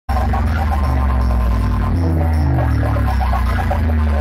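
Loud DJ 'power music' played through a stacked speaker-box sound system. A deep, sustained bass drone dominates, with a stepping bass melody above it and a short high blip repeating throughout.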